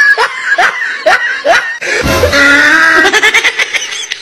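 Laughter: a quick string of short rising laughs, about two a second, then a longer drawn-out laughing cry, with music underneath.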